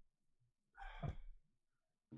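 A person's single sigh or breathy exhale about a second in, with near silence around it.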